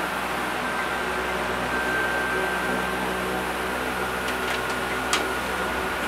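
A steady mechanical hum with a thin, steady high whine running over it. A few light clicks and knocks come about four to five seconds in.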